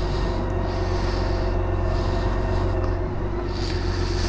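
BMW K1600GTL's inline-six engine running steadily at low revs as the motorcycle rolls slowly, a constant low hum with no revving.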